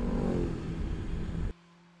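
BMW S 1000 XR sports-tourer's four-cylinder engine running as the bike rides off, its pitch falling. The sound cuts off suddenly about a second and a half in.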